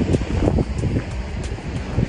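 Wind buffeting the microphone in uneven gusts, over the wash of surf breaking on rocks below.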